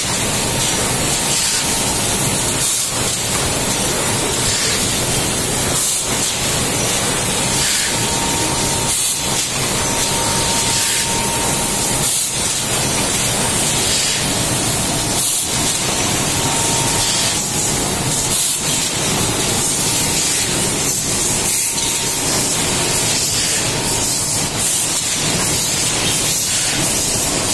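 A loud, steady hiss, like rushing air or spray, with short dips about every three seconds.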